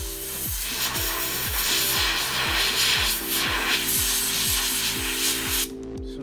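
A brush scrubbing the circuit board of an Antminer S7 hashboard to clear oxidation. The scrubbing is steady and stops suddenly near the end, over background electronic music with a steady beat.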